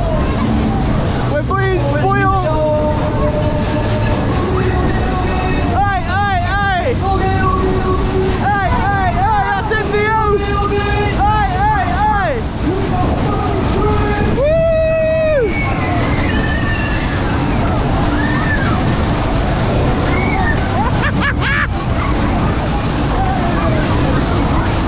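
Riders whooping and screaming on a Polar Express-style fairground ride running at speed, in repeated rising-and-falling calls with one long held scream about halfway through. Under them runs a steady rumble of the ride with wind buffeting the microphone.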